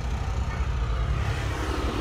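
A motor vehicle engine idling steadily, a low even rumble.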